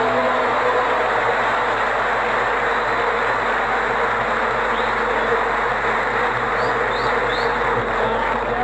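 A large concert audience applauding, a dense, steady clapping that fills the pause between sung phrases.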